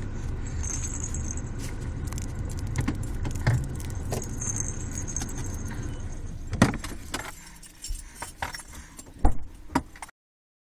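Steady low rumble of a car cabin on the move, with a baby's toy jingling and rattling. The rumble dies away about seven seconds in, and a few sharp clicks and knocks follow, the loudest near the end.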